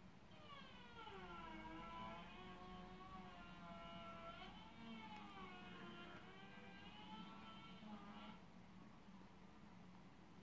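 Faint engine-like drone whose pitch slides down, holds, rises and falls again over about eight seconds, over a steady low hum.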